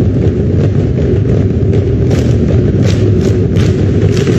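Massed singing and drumming of a Tongan mauluulu performed by a large girls' school group, heard as a loud, muddy rumble, with sharper strokes from about halfway in.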